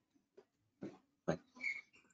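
Mostly quiet, broken by a few short, faint vocal sounds, one of them the spoken word 'right'.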